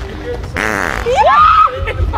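A loud, buzzy fart noise lasting about half a second, about half a second in, followed by a person's voice rising and bending in pitch in a surprised exclamation.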